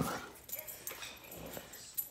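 A dog's faint whimpering with scattered light clicks, like claws on a tile floor as the dog walks. This follows a louder vocal sound that cuts off right at the start.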